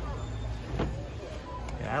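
A black cat figurine is set back down on a perforated metal store shelf with a single light knock about a second in, over a steady low rumble of store background noise.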